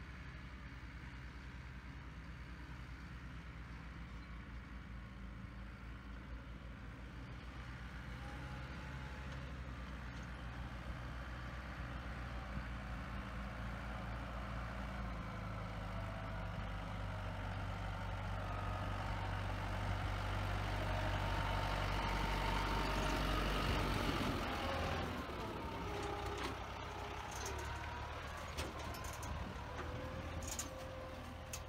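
A farm tractor pulling a range feeder drives up. Its engine runs steadily, growing louder as it approaches, is loudest about two thirds of the way through, then drops away with a change in pitch. A few sharp clicks come near the end.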